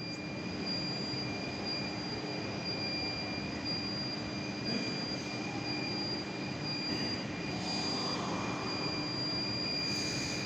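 Steady room noise of a large hall: an even rushing hiss with a low hum and a faint, high-pitched steady whine.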